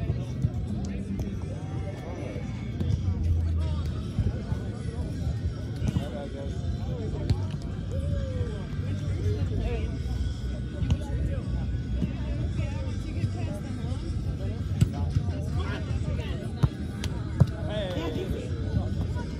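Outdoor volleyball tournament ambience: indistinct voices and music from around the grounds over a steady low rumble. A few sharp slaps of hands hitting the volleyball stand out, the loudest near the end.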